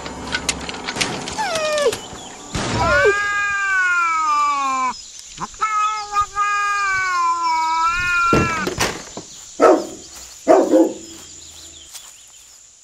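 An animal making two long, wavering calls, each about two and a half seconds, that drop in pitch at the end. Short falling calls come before them, and two brief calls follow near the end.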